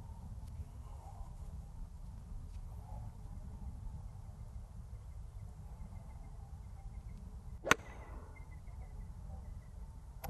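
A single crisp strike of a golf club on the ball about three-quarters of the way through, over a steady low outdoor rumble.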